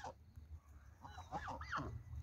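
Canada geese giving a few soft, short honking calls, faint and close together, starting about a second in.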